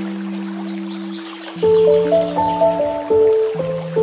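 Slow, calm piano music: a held chord gives way to a new cluster of notes struck about a second and a half in, ringing on. A faint trickle of running water sits underneath.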